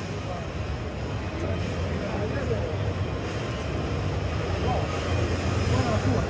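Background chatter of a crowd of visitors over a steady low hum, with no voice standing out.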